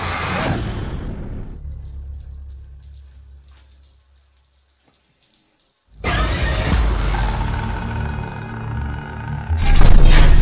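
Horror film score and sound design: a loud sting fading into a low drone, then about two seconds of silence. Running shower water then cuts in under tense music that swells to a loud hit near the end.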